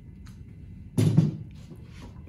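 A single dull thump about a second in, a ceramic serving dish knocking as shredded cheese is tipped from it into a stainless steel mixing bowl, with a few faint ticks before it.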